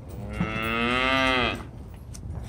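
A single long moo from cattle. It lasts a little over a second and drops in pitch as it ends.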